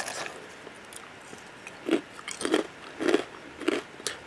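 A mouthful of crunchy cinnamon cereal being chewed close to the microphone: four crunches about half a second apart, starting about two seconds in.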